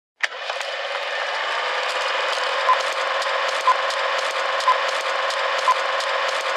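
Thinly filtered intro of a song: a steady mechanical ticking and ratcheting texture with no bass. A short beep sounds once a second four times, from almost three seconds in.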